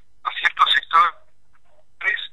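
Speech heard through a telephone line: a short spoken phrase in the first second, then a pause.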